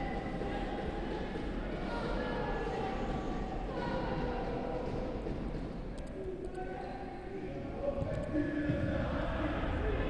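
Ambience of a futsal match in a sports hall: a steady, echoing background with faint distant shouts from players and spectators, and a few light clicks about six seconds in.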